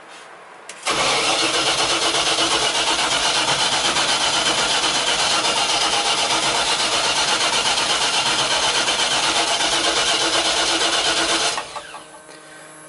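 Pickup truck engine cranked over by the starter for about ten seconds without firing, the truck being out of fuel; the cranking starts suddenly about a second in, holds steady and stops just before the end.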